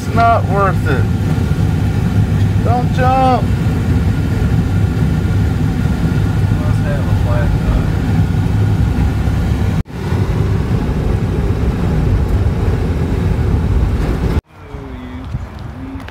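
Road and engine noise inside a moving vehicle's cabin: a steady low rumble, with a few brief voices over it in the first seconds. It drops out abruptly near the end, leaving a quieter outdoor background.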